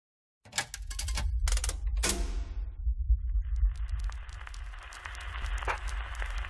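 Trailer sound design: a deep low rumble with a quick series of sharp clicks and knocks and one ringing hit about two seconds in, then a steady crackle under the rumble.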